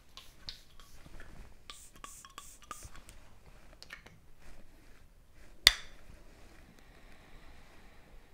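Quiet handling of a glass perfume bottle and paper blotter: small clicks and rustles with a few short hissing bursts from the spray atomizer around two seconds in, then one sharp glassy clink about five and a half seconds in.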